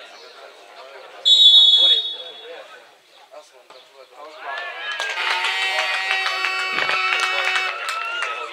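A referee's whistle gives one short, loud blast just over a second in. From about four and a half seconds, several horns sound together at once, mixed with shouting from the spectators.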